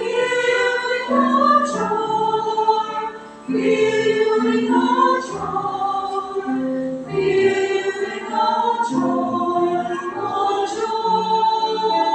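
Mixed choir of women's and men's voices singing a slow sacred anthem in several parts, in sustained phrases of a second or two, each ending with a brief break for breath.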